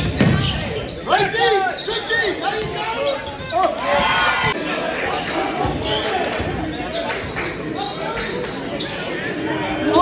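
Basketball dribbled on a hardwood gym floor, the bounces echoing in a large hall, amid crowd voices and shouts.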